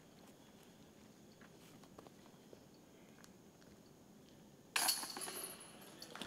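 A disc putted into a metal disc golf basket: a sudden jingle of the chains about three-quarters of the way in, fading over about a second after a stretch of near silence.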